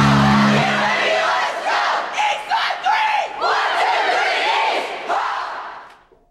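A swim team huddled together, shouting a team cheer as a group in several short unison yells. Rock music ends about a second in, and the cheer fades out near the end.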